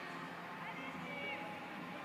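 Faint ambience of a large sports hall: a steady low hum under distant, indistinct voices.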